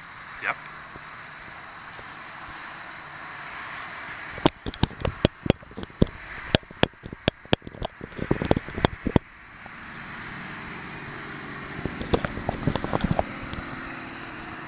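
A run of sharp clicks and crackles for about five seconds from a third of the way in, with a few more near the end, over a steady high-pitched whine.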